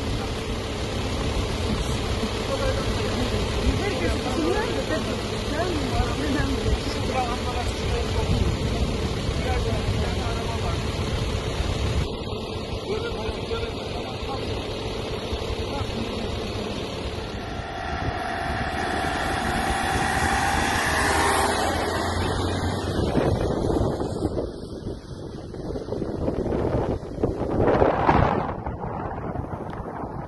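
Indistinct voices of people talking over steady vehicle engine noise. Past the middle a vehicle's engine note rises as it goes by, and a louder rushing noise comes near the end.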